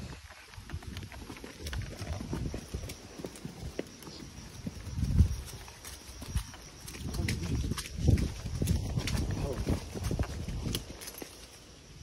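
Horses walking on a grassy dirt trail: soft, uneven hoof footfalls, with a couple of louder low thuds about five and eight seconds in.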